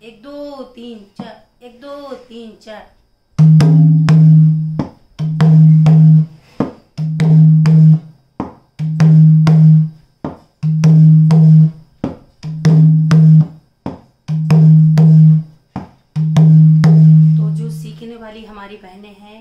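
A dholak played by hand in a steady repeating rhythm. A deep, ringing bass-head stroke that sustains for about a second recurs roughly every 1.8 seconds, with quick sharp finger strokes between. The drumming starts about three seconds in.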